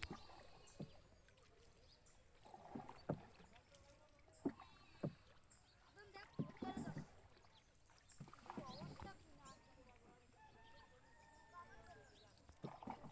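Small boat being paddled through still water: a few sharp knocks around the middle and soft water sounds, all faint.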